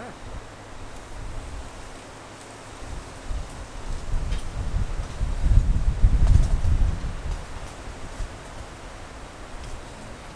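Low rumbling noise on the microphone, swelling to its loudest a little past halfway and then easing off, with light rustling.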